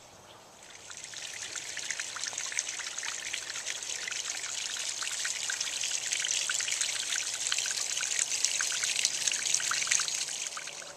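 Water trickling and splashing over rocks into a garden pond. It starts about a second in and grows louder.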